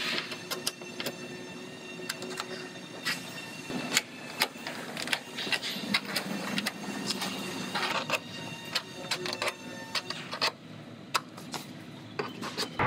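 A hand scribe scratching along the edge of sheet-metal body panels, a string of short scrapes and ticks, marking the cut line where the new quarter panel overlaps the car.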